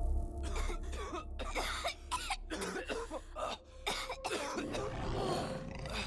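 Coughing, throat clearing and grunts from several animated characters in a run of short, irregular bursts. A low rumble dies away in the first second or two, and faint music holds a steady note near the end.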